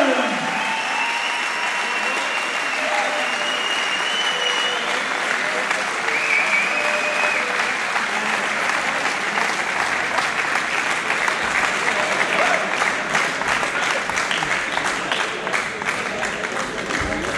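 Crowd applauding steadily, with a few voices calling out over it; individual claps stand out more toward the end.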